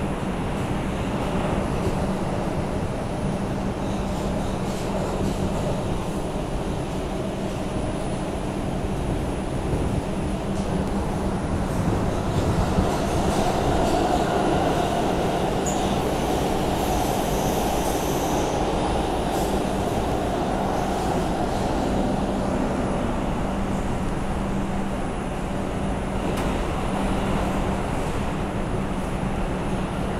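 Inside a moving R142 subway car: steady rumble of the wheels on the rails with a constant low hum. The sound grows louder for a stretch in the middle, with a high squeal from the wheels.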